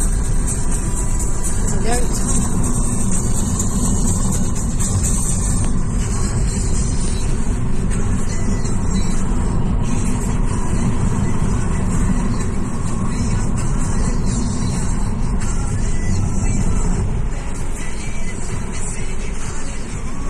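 Steady road and wind rumble of a car driving, heard from inside the car, with music playing underneath.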